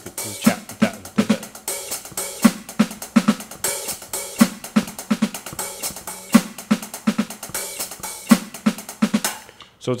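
Electronic drum kit played with sticks: a steady, repeating sticking pattern of hi-hat notes in threes, snare hits and doubles, played slowly. The playing stops just before the end.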